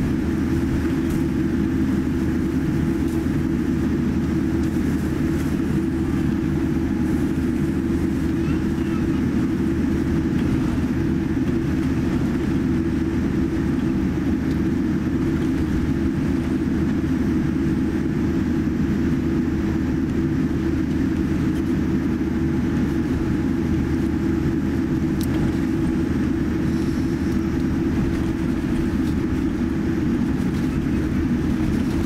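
Steady cabin noise inside a Boeing 787-8 airliner taxiing: an even, low rumble and hum from the idling engines and cabin air, unchanging throughout.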